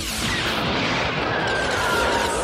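Cartoon spaceship flight sound effect: a loud, steady rushing noise of the craft's thrusters, with soundtrack music underneath.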